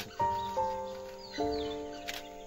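Background music: a slow melody of held notes, each starting sharply and fading away, with three new notes coming in.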